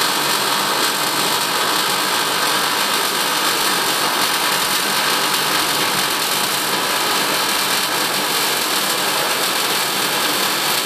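Electric welding arc burning in one continuous bead around a half pipe, a steady, unbroken hiss and crackle with no breaks in the arc.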